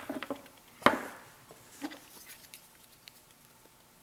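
Small handling noises at a workbench as tape strips are picked up and pressed onto a small gear motor: one sharp click a little under a second in, then a few faint clicks and rustles.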